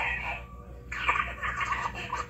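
The film's obscene phone caller making squealing, clucking, animal-like noises down a telephone line, starting about a second in.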